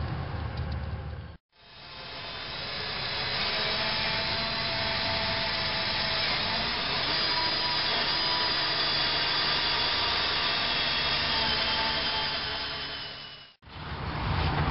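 Power drill with a small bit boring a pilot hole through the fiberglass hull bottom from inside the bilge. The motor runs steadily for about twelve seconds, fading in about a second and a half in and fading out near the end.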